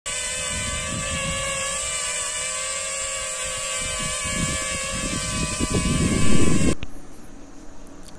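250-size quadcopter in flight, its Racerstar 2280KV brushless motors and Gemfan triblade propellers making a steady whine of several held tones. Gusts of low rumble from wind on the microphone build up toward the end, the loudest part, and the sound cuts off suddenly about a second before the end, leaving quiet room tone.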